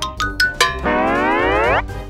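Cartoon sound effects over music: a quick run of short plinking notes, then a single pitched tone that glides upward for about a second.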